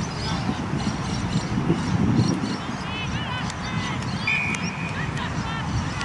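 Players calling out across a football oval, with one short, steady blast of an umpire's whistle a little after four seconds in.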